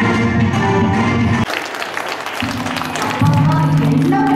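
Recorded dance music playing loud, cutting off abruptly about one and a half seconds in, followed by audience applause.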